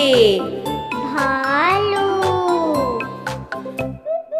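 Children's song music with a steady beat and tinkling chimes, with a voice singing one long phrase that slides up and down in pitch in the middle.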